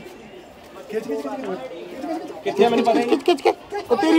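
Indistinct voices of people talking, quiet at first and busier from about a second in.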